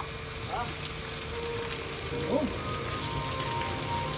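Steady hiss of water spraying from a hose onto an elephant, under background music with held notes and short sliding vocal notes.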